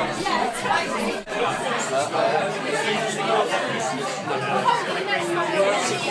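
Indistinct chatter of many people talking at once in a crowded room, with no single voice standing out.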